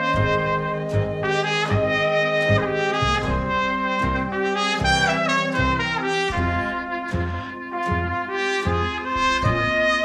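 Jazz trumpet solo, bright held and quick notes with a falling run in the middle, backed by a small jazz band keeping a steady beat.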